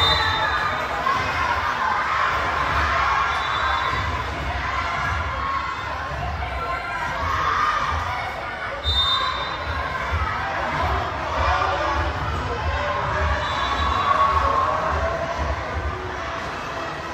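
Schoolchildren shouting and cheering together in a large sports hall during a volleyball rally, with a few brief high squeaks cutting through.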